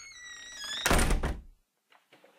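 A high creak that slides slowly down in pitch, then, about a second in, a loud heavy bang with a deep boom that dies away within half a second, like a door creaking and slamming shut.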